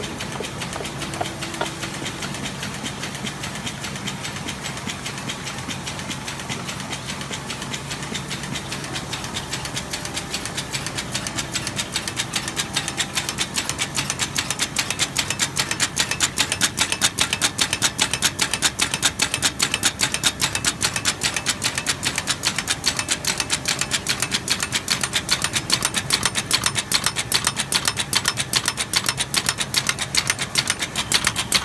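Carton folder-gluer (pasting machine) running, a rapid, even clatter with a low hum underneath, growing louder after about ten seconds.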